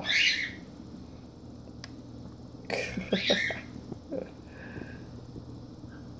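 A man laughing in breathy bursts at the start and again about three seconds in, with a single faint click between them.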